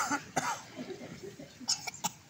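People in a crowd coughing: a loud cough right at the start, another about half a second in, and a short cough near the end, with a faint murmur between.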